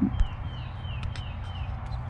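A bird calling: a run of about five short chirps, each falling in pitch, evenly spaced about three a second, over a steady low rumble.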